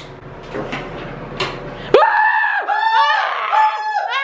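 Rustling handling noise, then from about halfway a loud, high-pitched drawn-out scream in several held notes with short breaks.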